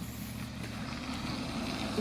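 A steady low background rumble.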